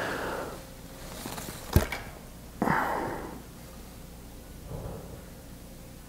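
An archer draws a compound bow and holds at full draw: one sharp click about two seconds in, then a breath a moment later.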